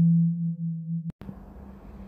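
A steady low synthesized tone with fainter higher overtones, an intro sound effect, weakening and then cutting off abruptly about a second in, leaving a faint hiss.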